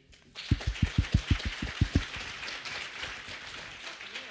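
Audience applause, starting a moment in. One person claps close to the microphone, about seven sharp claps a second for the first couple of seconds, and then the applause thins out.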